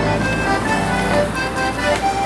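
Accordion playing a traditional folk dance tune in held, changing notes, with a steady low rumble underneath.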